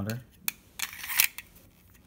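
Steel Metalform 10-round 1911 magazine being pushed into the pistol's magwell. A small click, then a short metallic scrape as it slides in, ending in a light click.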